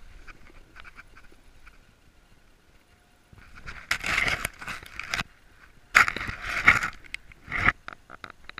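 Snowboard sliding and scraping over packed snow in two long rough bursts, the first about three and a half seconds in and the second about six seconds in, with faint scuffs before them.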